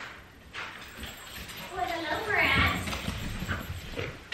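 A dog's paws scrambling and clicking on a hardwood floor as it runs in, with a short pitched vocal sound about two seconds in.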